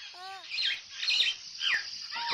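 Birds chirping: several short, high calls, some sweeping sharply downward, after a brief falling voice-like sound at the very start.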